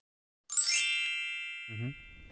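Logo sound effect: a bright chime struck about half a second in, ringing with a shimmering high edge and fading over more than a second. A short low sweep follows near the end.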